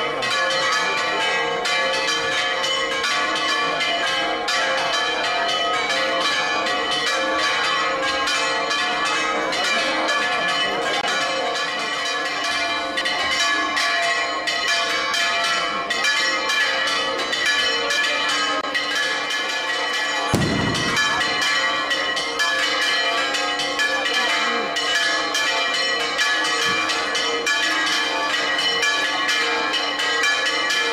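Bells ringing rapidly and without pause, a dense jangle of overlapping strikes. One brief low thud sounds about two-thirds of the way through.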